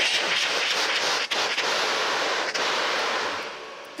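A carbon dioxide fire extinguisher discharging into a towel held over its horn, a steady loud hiss of high-pressure gas that tapers off near the end. The escaping CO2 is cold enough to freeze into dry ice in the towel.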